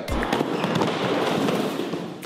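A dense crackling, hissing noise effect lasting about two seconds, with faint music under it.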